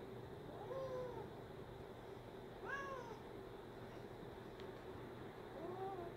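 A domestic cat giving three short meows, each rising then falling in pitch, spaced a couple of seconds apart.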